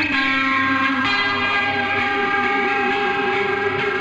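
Electronic instrumental music with held, layered chords; the harmony changes right at the start and shifts again about a second in.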